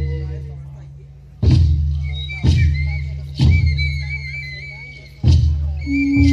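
Music led by a large drum struck slowly, four heavy beats each left to ring and fade, with a longer gap before the last. A high wavering melody line comes in about two seconds in, over a steady low drone.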